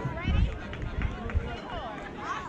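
Overlapping voices of children and adults calling and chattering across a ball field. A brief low thump about a third of a second in is the loudest sound, and there are a couple of short clicks later on.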